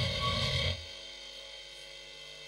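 Steady electrical mains hum from the playback sound system. A low rumble under it stops under a second in, leaving the hum alone.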